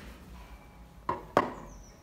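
Two sharp knocks about a quarter of a second apart, the second louder with a brief ring, as a hand tool is put down on the wooden workbench.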